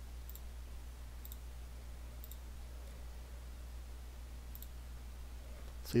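Four faint computer mouse clicks, spaced irregularly a second or more apart, over a steady low electrical hum.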